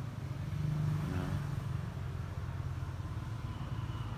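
Diesel engine of a Kia K165 light truck idling steadily with a low, even rumble, swelling slightly about a second in.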